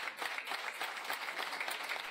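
Applause from a small group of people: many quick, overlapping hand claps, kept up at a steady, moderate level.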